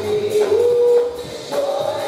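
Live gospel praise singing: a lead singer and congregation with band accompaniment and a shaken tambourine. One sung note is held for about half a second near the middle.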